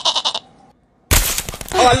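A short, quavering goat bleat right at the start. About a second in, a loud sudden rush of noise follows as a cartoon magic transformation effect, with a voice starting just before the end.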